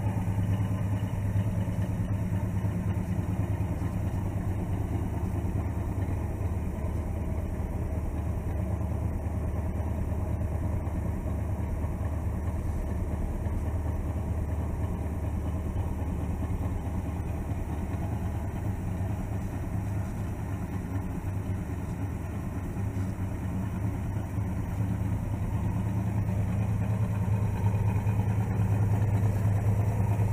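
1964 Pontiac GTO's 389 V8 idling steadily, a little louder near the start and end than in the middle.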